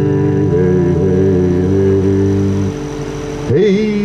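Acoustic-electric guitar played through a small portable amplifier: a chord rings and sustains with a steady, drone-like tone, then thins out about three seconds in, and a short sliding pitched sound rises and falls near the end.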